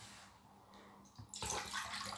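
Water poured from a plastic cup into a bowl, a splashing pour that starts about a second and a half in.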